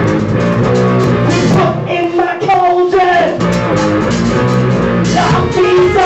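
A rock band playing live: electric guitar and drum kit, loud and continuous.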